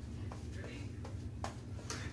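A double-edge safety razor scraping through lathered stubble in a few short, faint strokes, over a steady low hum.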